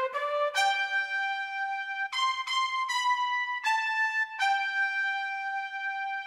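Yamaha Genos arranger keyboard playing a trumpet voice with the right hand: a slow melody of single held notes, about eight in all, the last one sustained into a long note near the end.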